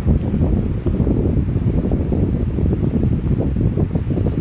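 Steady, low rumbling wind noise from moving air buffeting the microphone.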